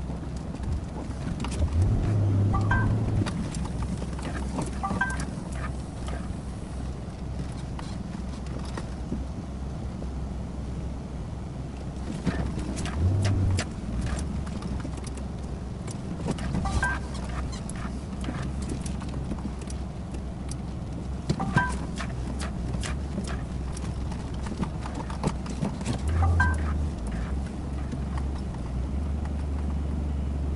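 A 5-ton truck's diesel engine running low and steady as the truck is manoeuvred round, its revs rising briefly about three times and holding higher near the end. Scattered sharp clicks and a few short squeaks come from around the cab.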